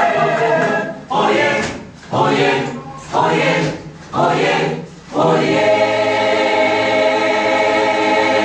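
Church choir singing a gospel song in short, separate phrases about a second apart, then holding one long chord from about five seconds in.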